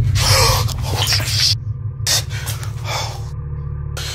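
A loud, steady low drone starting suddenly, overlaid by three rushes of hissing noise, each about a second long.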